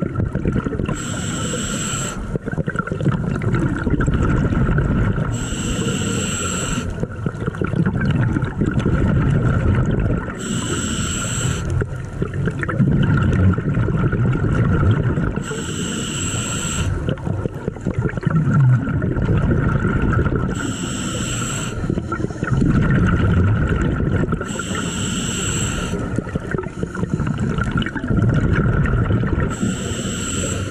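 Scuba regulator breathing underwater, heard at the diver's own mouth: a hissing inhale about every five seconds, each lasting a second or so, alternating with the bubbling rumble of the exhaled air.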